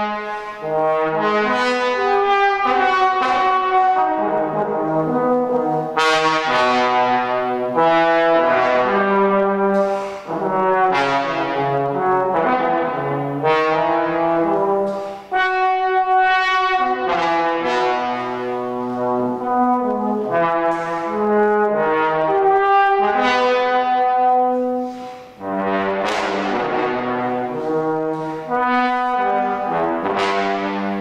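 Unaccompanied trombone playing a fast-moving contemporary solo line: many short notes that jump about in pitch, broken by a few brief gaps.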